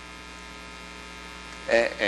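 Steady electrical mains hum in the recording, with a man's hesitant "uh, uh" near the end.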